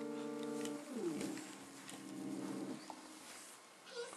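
Cartoon soundtrack playing from a television: held musical notes that end in a falling slide about a second in, then a warbling tone that fades out before three seconds.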